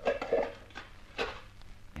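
Radio-drama sound effect of metal clattering: a couple of short clanks at the start and another about a second in.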